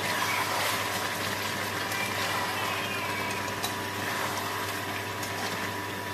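Chicken and potatoes in masala frying in a steel kadai, a steady sizzle with a few light knocks of a spatula stirring, over a constant low hum.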